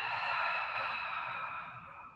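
A woman's long, audible exhale, breathy and without voice, tapering off over about two seconds.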